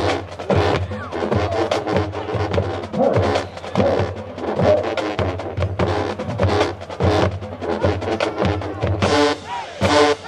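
Marching band playing, with drums keeping a steady beat under the horns.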